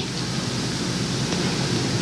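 Steady hiss with a low hum underneath and no distinct event: the background noise floor of an old, worn video recording.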